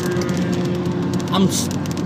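Car cabin noise while driving: a steady low hum from the engine and road under a man's voice, which says one word near the end.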